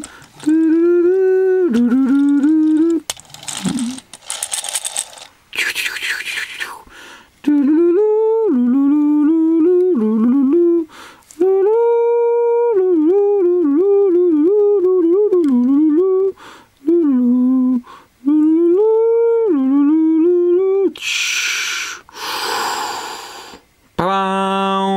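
A man humming a wordless "doo-doo-doo" tune, the melody stepping up and down in short notes. Two spells of hiss-like noise break in, one a few seconds in and one near the end.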